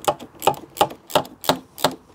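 Ratchet spanner clicking in short, even strokes, about three a second, as it tightens the nut on a car battery's terminal clamp.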